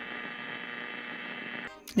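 Steady hum and hiss from a narrow-band recording, with a few faint steady tones, cutting off suddenly near the end.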